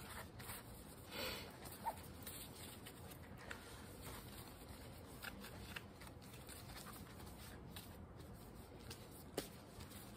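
Faint rubbing and rustling of a cloth rag wiping the back of a copper etching plate with mineral spirits, with a few sharp clicks as the plate is handled.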